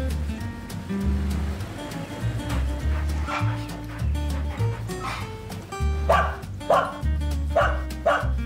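A golden retriever barking in short yips, a few spaced out at first and then a quick run of barks in the last two seconds, over background music with a steady bass line.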